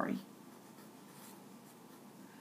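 Faint scratching of a marker pen writing on paper.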